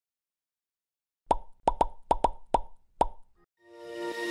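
Animated logo intro sound effects: a quick run of seven short plops beginning a little over a second in, then intro music starting to fade in near the end.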